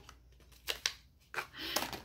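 Fingers scratching over the rough surface of a rubber glue-and-residue eraser block: two short scrapes, then a longer rasp near the end.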